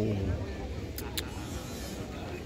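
The drawn-out end of a shouted drill command, the voice falling in pitch, then two sharp knocks a fifth of a second apart about a second in, over steady outdoor background noise.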